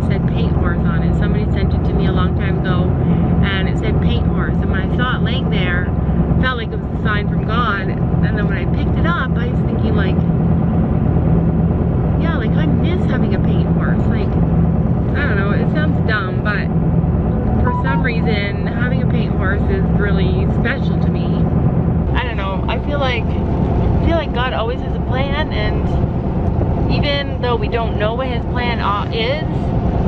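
A woman talking inside a moving car, over the steady low hum of the car's engine and road noise; the hum shifts about two-thirds of the way through.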